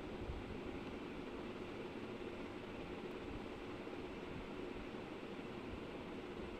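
Steady background noise: an even hiss with low rumble and a faint steady hum, no distinct events.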